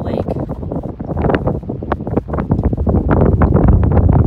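Wind gusting across the microphone: a buffeting rumble that builds and grows louder over the few seconds.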